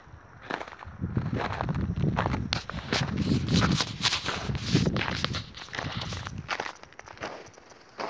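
Footsteps crunching through fresh snow, a quick run of crackly steps that thins out and fades near the end.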